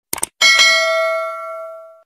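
Sound effect of a quick double mouse click, then a single bell ding that rings on and fades out over about a second and a half: the notification-bell chime of a subscribe-button animation.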